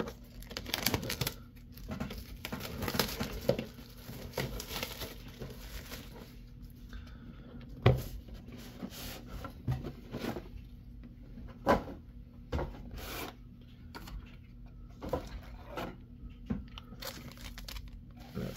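Plastic shrink wrap being torn and crinkled off a cardboard trading-card box, most heavily in the first few seconds. After that come a few sharp knocks and rustles as the cardboard box and its lid are handled.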